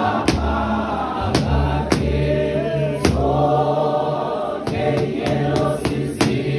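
A large choir of men and women sings a Xhosa hymn of praise in harmony. Sharp percussive beats keep time roughly once a second.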